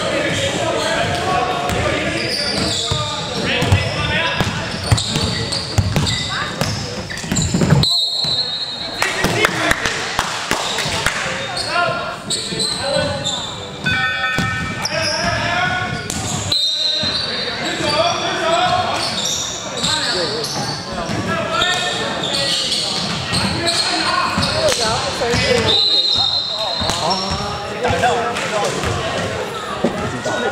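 Indoor basketball game on a hardwood court: a ball bouncing and players' voices calling out, echoing in the large hall. A few short high whistle blasts, the longest near the end.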